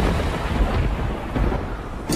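A low rumbling, rushing noise with no tune in the soundtrack, fading away over the two seconds.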